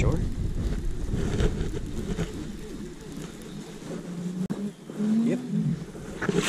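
Wind buffeting the camera microphone as a low rumble that fades over the first few seconds. A single sharp click comes about four and a half seconds in.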